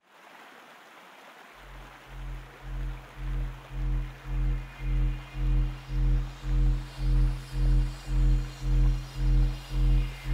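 Background music: a low, pulsing bass tone, about two pulses a second, enters over a soft hiss about one and a half seconds in and swells steadily louder.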